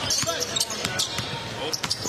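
Basketball bouncing on a hardwood court as it is dribbled, several sharp bounces, with faint voices in the background.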